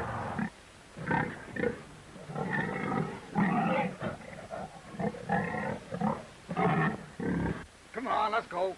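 Pigs grunting and squealing in a run of short calls, one after another.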